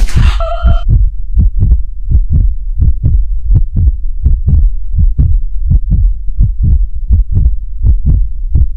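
Trailer sound effect of a fast heartbeat: low, loud thumps at about four a second, steady throughout. It opens with a brief bright hit whose ringing tone fades within the first second.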